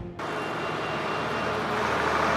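A bus driving towards the camera on a road, its engine and tyre noise steady and slowly growing louder after a brief drop at the start.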